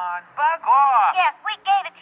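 Only speech: radio-drama dialogue, with no other sound standing out.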